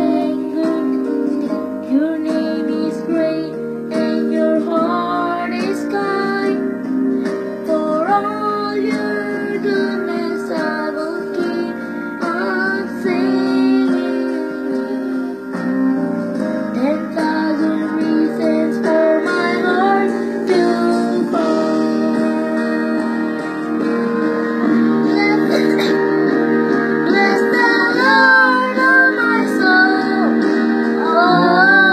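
Children singing a Christian song into a microphone over a guitar accompaniment.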